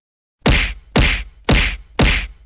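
Cartoon whack sound effect: three sharp hits about half a second apart, each dying away quickly, with a fourth starting at the very end.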